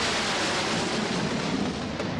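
Jet aircraft flying low past, a steady rushing engine noise with a sweeping, phasing quality as it goes by.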